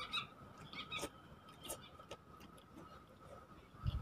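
Quiet, faint chewing and mouth clicks of a person eating, with a few short high chirps in the background.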